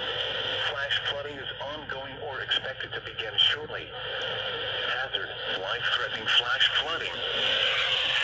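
A voice speaking over a radio broadcast, with a steady hiss behind it.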